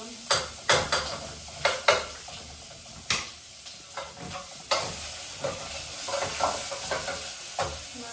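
A metal spoon stirring in a metal cooking pot on a gas stove, knocking sharply against the pot a dozen or so times at uneven intervals, over a steady sizzling hiss from the cooking.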